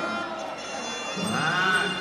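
Traditional Kun Khmer ring music: a reedy wind-instrument melody with a wavering pitch. It is softer at first, then a note swells, rising and falling, just past the middle.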